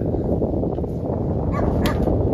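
Wind buffeting the microphone, a steady low rumble, with a faint brief high call about one and a half seconds in and a sharp click near the end.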